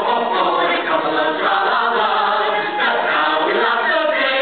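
A mixed ensemble of amateur cast voices singing a show tune together, continuously.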